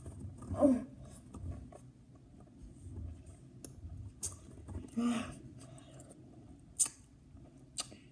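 Wet, sticky chewing and sharp mouth clicks from a person working a large clump of Sour Skittles, with two short hummed vocal sounds, one just after the start and one about five seconds in.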